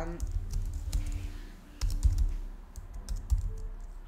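Typing on a computer keyboard: irregular keystrokes as a short sentence is typed, over a low rumble.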